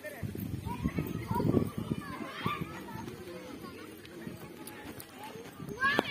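Indistinct voices of people talking outdoors, with a low, uneven rumble on the phone's microphone.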